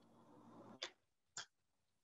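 Near silence with a faint background hum, broken about a second in by two short sharp sounds half a second apart.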